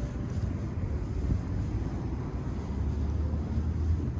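Low, steady engine rumble from distant traffic, swelling slightly near the end, with faint outdoor background noise.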